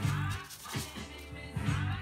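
Background music with sustained low notes.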